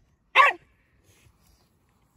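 A small terrier barking once, a single short, sharp bark.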